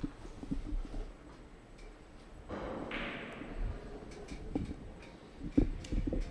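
Quiet billiards hall room sound with scattered faint knocks. About halfway there is a brief rushing scrape lasting about a second, and near the end a single sharp knock.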